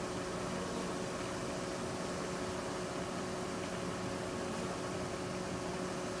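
A swarm of honeybees clustered at the entrance of a wooden bait hive, many wings making a steady, even hum.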